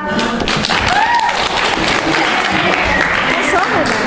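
A roomful of people clapping, a dense patter of hand claps with voices calling over it.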